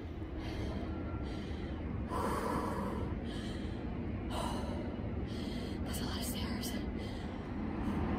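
A woman breathing hard and panting, a heavy breath every second or so, over steady low background noise. She is out of breath from a long, steep stair climb in hot, humid air.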